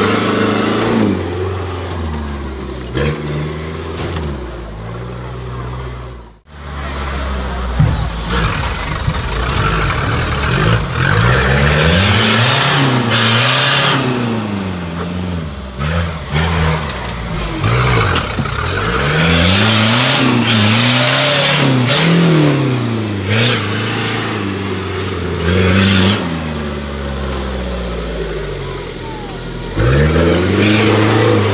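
Off-road trial buggy engines revving hard and repeatedly, the pitch climbing and falling every second or two as they work through sand obstacles. There is a brief break in the sound about six seconds in.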